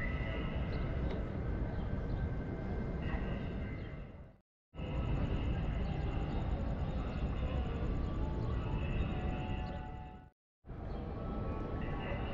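Open-air ambience of a large city square: a steady low rumble with faint far-off voices and tones above it. The sound drops out completely for a moment twice.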